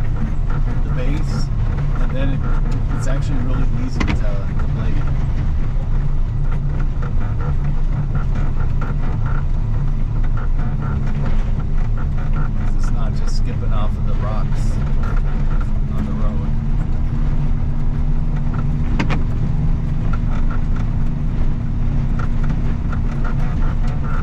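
The engine of a snow-plowing machine running steadily under load, a continuous low drone. A couple of sharp knocks come through, one about four seconds in and one about nineteen seconds in, and a steady hum joins about two-thirds of the way through.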